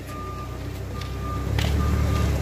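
Vehicle reversing alarm beeping, a single high steady tone about once a second, over a low engine rumble that grows a little louder.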